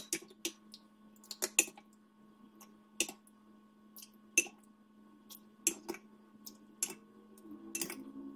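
Ladle clinking against glass bowls as a liquid custard mixture is ladled out: about a dozen light, irregular clinks and taps over a faint steady hum.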